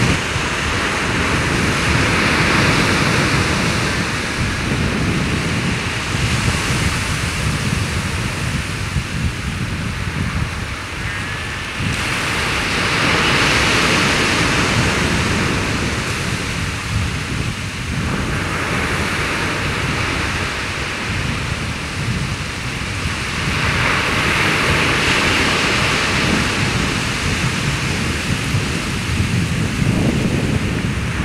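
Surf breaking on a sandy beach. The wash swells and fades every several seconds, over a steady low rumble of wind on the microphone.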